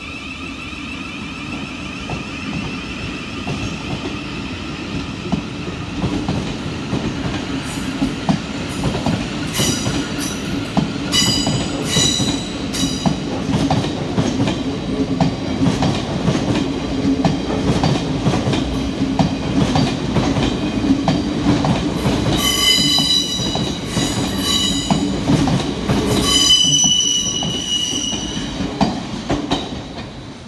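Thameslink Class 700 electric multiple unit running along the platform. It keeps up a steady hum while its wheels squeal high-pitched again and again, loudest in the second half.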